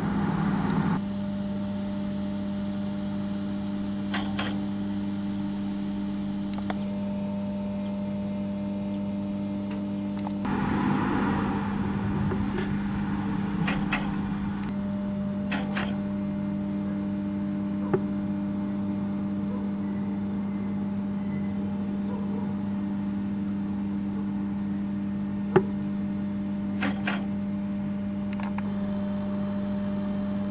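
A steady low hum throughout, with a few sharp short clicks and a burst of rustling noise about ten seconds in.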